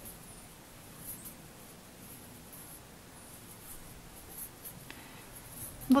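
Crochet hook working thick cotton twine into double crochet stitches: faint, intermittent scratchy rustles over quiet room tone.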